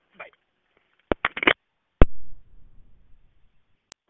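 Clicks on a recorded telephone line as a call is hung up: a quick cluster of four clicks about a second in, then one loud click halfway through followed by a brief low noise that fades. A single sharp click comes just before the end.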